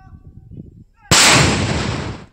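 An explosion: a sharp thump about a second in, then a loud rush of noise that dies away over about a second.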